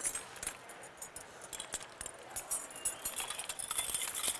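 Metal horse bit with chains, a chain mouthpiece and its curb chain, jingling and clinking irregularly as it is picked up and handled, busier in the second half.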